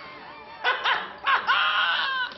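A person making wordless, whining vocal noises: a quiet start, two short pitched cries, then one longer held cry through the second half.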